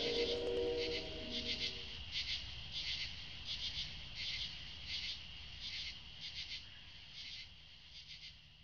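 Insects chirping in an even rhythm, about three chirps every two seconds, slowly fading out. The tail of a music track dies away in the first two seconds.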